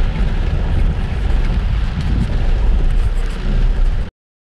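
Car driving on a wet road in the rain, heard from inside the cabin: a steady low rumble of engine and tyres.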